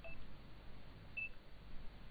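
Two short, high electronic beeps about a second apart, faint, over a low steady hum.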